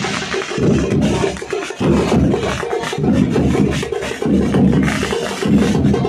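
Background music with a heavy beat, strong bass pulses coming about once a second.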